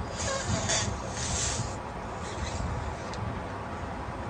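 Short hissing bursts of breath and air as a woman blows up a rubber balloon, with a low rumble under them.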